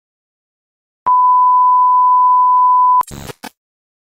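A single steady electronic beep at one unchanging pitch, lasting about two seconds and starting about a second in, then cutting off sharply, followed by two brief bursts of noise.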